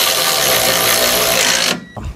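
Power angle ratchet spinning a 15 mm bolt in, a steady whirring run that cuts off suddenly near the end.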